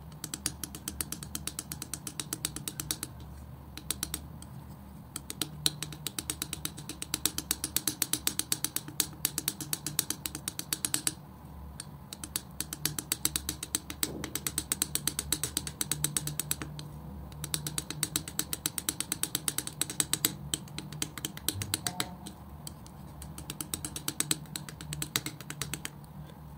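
Metal palette knife working thick wet acrylic paint: rapid sticky clicking and smacking as the blade presses and lifts the paint, in runs with short pauses between strokes.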